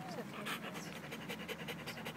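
A collie panting rapidly and evenly with its mouth open.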